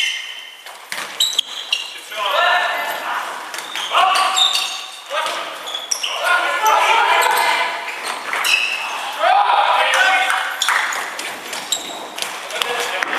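Futsal players shouting to each other in an echoing sports hall, with a few sharp ball kicks or footfalls on the wooden floor in the first two seconds.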